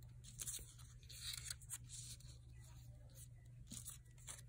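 Faint rustling and sliding of black paper cut-out shapes as they are flipped over and moved about on a sheet of paper, in a few short, soft strokes.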